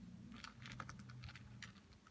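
Faint, scattered clicks of licorice allsorts candies being sorted through by hand on a plate, the sweets knocking against each other and the plate.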